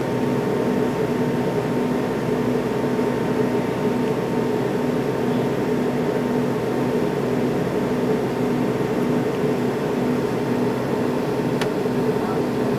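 Cabin noise of a McDonnell Douglas MD-80 airliner in flight: a steady roar of the tail-mounted Pratt & Whitney JT8D turbofans and the airflow, with a low steady hum running through it. A faint click comes near the end.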